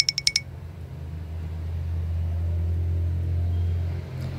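A low, steady mechanical hum that swells over the first second or two and then holds. A quick run of high-pitched ticks stops about half a second in.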